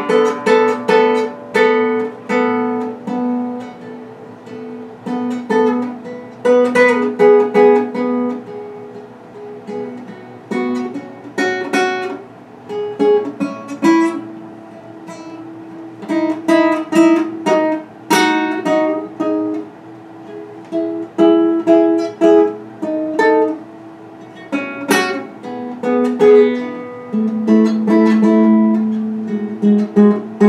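Solo classical guitar, improvised: plucked single notes and chords in loose, uneven phrases. It softens for a few seconds around the fourth and ninth seconds, with sharp chord attacks about 18 and 25 seconds in, and a low note held near the end.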